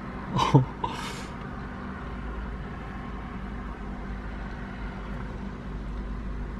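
Steady low background rumble with a faint hum. About half a second in there is a short vocal sound, followed by a brief breathy hiss like an exhale.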